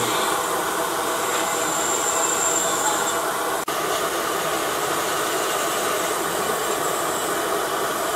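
Steady mechanical whirring noise with a constant pitch, cut off for an instant a little before the middle.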